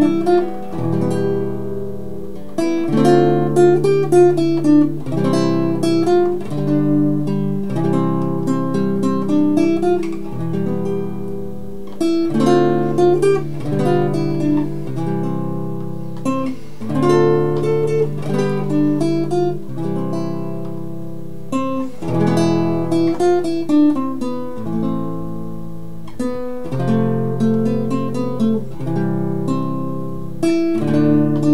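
Nylon-string classical guitar played solo, fingerpicked: a slow hymn melody over held bass notes and chords, with a steady pulse throughout.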